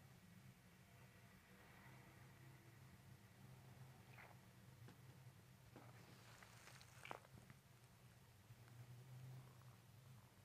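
Near silence: a low steady room hum, with a few faint clicks and a brief soft rustle between about four and seven seconds in.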